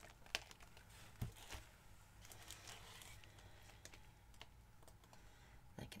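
Near silence with a few faint clicks and taps, one low thump about a second in, from a wet painted canvas being handled and tilted with gloved hands.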